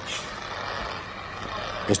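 Steady rushing noise of handheld fire extinguishers being sprayed onto a burning dumpster.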